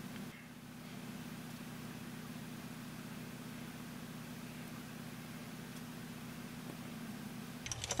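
Faint, steady low hum over a light hiss: quiet room tone with no distinct events.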